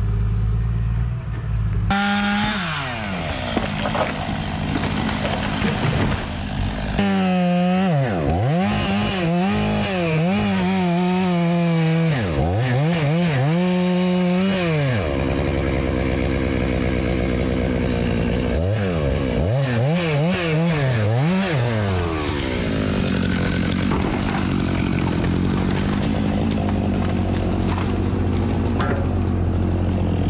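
Chainsaw revved up and down in repeated quick throttle bursts while felling walnut trees, over the steady run of a diesel machine's engine.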